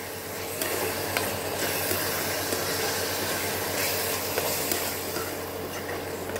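A spatula stirring and scraping thick radish halwa around an aluminium kadai, steady throughout with a soft sizzle as the mixture is cooked down until it thickens, and an occasional light click of the spatula on the pan.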